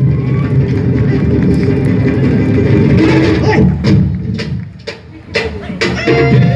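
Live Tahitian dance music: a percussion ensemble drumming densely with voices. Near the end it breaks into a few sharp, separate strikes about half a second apart.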